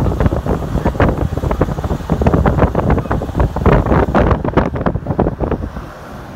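Wind buffeting the microphone at an open window of a car moving along a road: loud, gusty rushing and rumbling that drops off sharply near the end.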